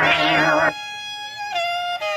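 Electronic synth with a pulsing, rising-and-falling filter sweep over a bass note cuts off about two-thirds of a second in. A saxophone then plays alone: a held note that bends down to a lower held note.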